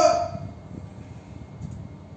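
A man's shout trailing off in the first half-second, then quiet room noise with faint movement.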